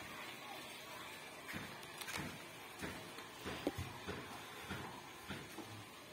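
Quiet background with a few faint, irregular soft knocks and rustles.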